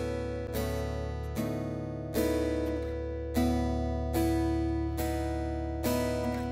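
Background music: plucked acoustic guitar chords, a new chord struck about every second, each ringing out and fading over steady low notes.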